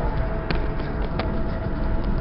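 Inside a moving car: steady low road and engine rumble with a faint steady tone, and two light clicks less than a second apart.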